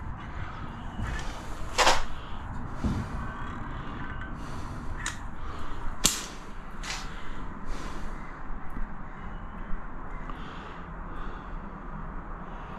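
Caulking gun being worked at the tap pipes: several sharp clicks and creaks of the trigger and plunger as sealant is pushed out, over a steady low background noise.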